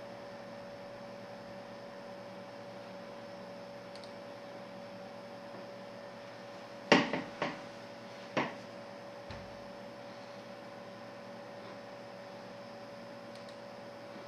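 Steady electrical hum with a constant tone. About seven seconds in, a loud sharp knock is followed by two lighter knocks over the next second and a half.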